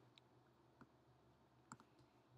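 Near silence with a few faint, short computer mouse clicks.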